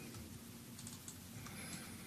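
Faint, scattered clicks of a computer keyboard and mouse over quiet room tone.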